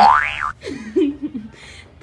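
A cartoon-style 'boing' sound effect: a springy tone sliding quickly upward over about half a second, followed by a short stretch of voice.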